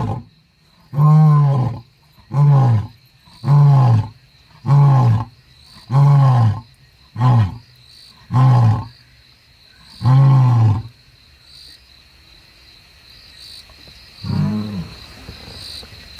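Male lion roaring: a bout of about eight short grunting roars, each falling in pitch and coming roughly a second apart, the one about ten seconds in a little longer. A single fainter grunt follows near the end.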